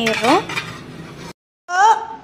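Stainless-steel lid being set onto a steamer pot, a short metal clatter and scrape, between bits of a woman's speech. The sound drops out completely for a moment past the middle, where the video is cut.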